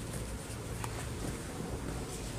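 Steady room tone of a sports hall: a low hum over even background noise, with one faint click a little under a second in.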